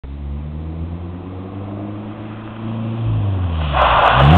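Nissan 240SX's KA24DE four-cylinder engine running steadily at low revs, then revving up near the end, joined by a sudden loud rush of noise as the car is pushed into a drift.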